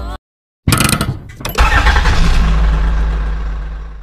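An engine starting: a short crackling burst of cranking, then it catches about a second and a half in with a rev. It settles into a deep rumble that fades away near the end.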